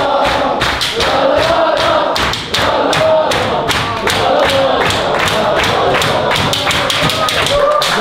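A group of football players singing a chant together while clapping their hands in a steady rhythm, about three claps a second.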